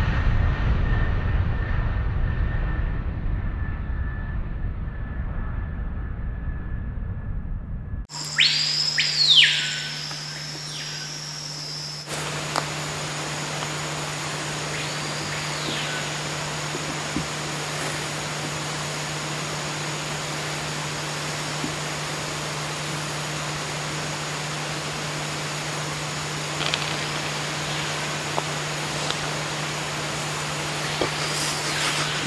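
Aircraft engine drone that fades over the first eight seconds. It then gives way to rainforest ambience: loud whistled bird calls that sweep up and down about eight to ten seconds in, another call near fifteen seconds, and a steady low hum with a thin high whine underneath.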